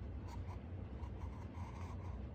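Pencil scratching on paper as a child draws the strokes of a letter: one short group of strokes just after the start and another near the end.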